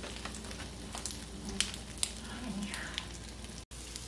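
Zucchini strips sizzling steadily as they fry in oil on a stovetop griddle, with a few light clicks. The sound drops out briefly near the end.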